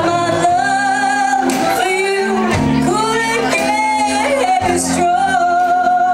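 Live band with a woman singing lead, holding long notes with vibrato over electric guitar, bass and drums.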